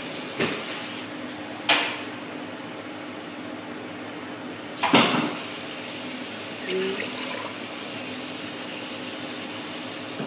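Steady hiss with a faint low hum from a pot of sugar and water heating on a gas hob, broken by short knocks about two seconds in and, loudest, about five seconds in.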